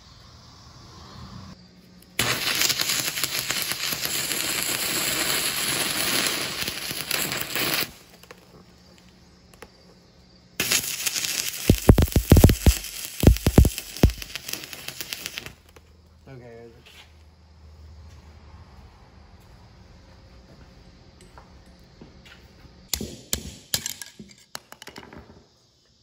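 Stick welding a repair on a cast-iron trailer hub: two stretches of crackling arc, about five seconds each, with a few heavy knocks during the second. A few sharp clicks follow near the end.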